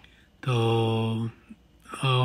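Speech only: a man drawing out the filler word 'to' (तो) on one level pitch for nearly a second, starting about half a second in. Near silence before and after it.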